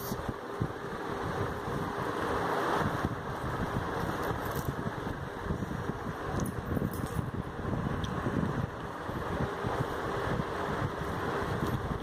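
Hands rubbing and squeezing crumbly flour-and-curd dough in a stainless-steel bowl, faint scuffing sounds over a steady background whir.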